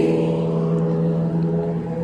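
Road traffic: a motor vehicle's engine gives a steady low hum with even overtones as a passing car fades.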